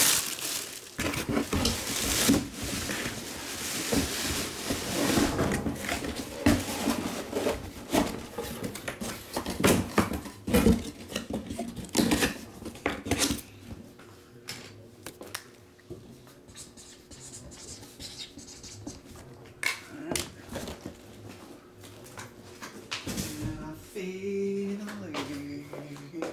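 Handling of packaging: a dense run of clicks, rustles and crinkling plastic for roughly the first half, then sparser, quieter handling noises.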